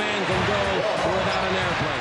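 Basketball game sound in an arena: crowd noise with voices calling out, and a basketball bouncing on the hardwood court.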